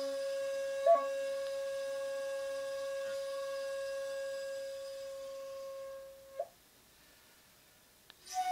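Shakuhachi holding one long, steady note for about six seconds, with a quick flick in pitch about a second in and a short flourish as the note ends. Then a pause of near silence for the last second and a half.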